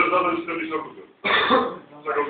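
A man talking, then clearing his throat in one short burst about a second and a quarter in.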